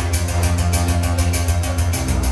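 Live synth-pop instrumental played on a synthesizer and laptop: a heavy synth bass under sustained keyboard tones, with a fast, even ticking beat up top. The bass line changes near the end.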